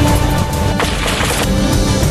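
News-programme countdown theme music, held notes over a low pulse, with a noisy sound-effect hit about a second in that lasts about half a second.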